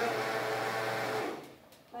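Countertop blender running on a tomato, onion and jalapeño salsa, then switched off about a second and a half in and winding down: the salsa is blended.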